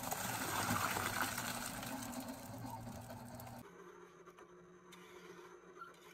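Wet concrete pouring and sliding out of a container into a shallow trench, with a steady low hum beneath it. About three and a half seconds in the sound cuts to a much quieter stretch with only a faint low hum.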